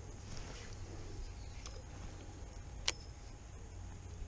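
Baitcasting rod and reel being worked through a retrieve: faint handling and reel noise over a steady low rumble of wind on the microphone, with a small click and then one sharp click about three quarters of the way through.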